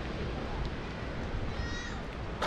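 Steady wind rumbling on the microphone, with a short high-pitched animal call near the end.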